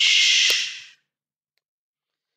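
A short breathy hiss close to the microphone, under a second long and fading out, with one faint click partway through; then silence.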